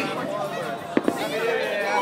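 Fireworks going off: two sharp bangs close together about a second in, amid the chatter of a crowd.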